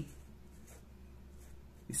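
Felt-tip marker writing numbers and letters, a faint scratching of the tip on the surface.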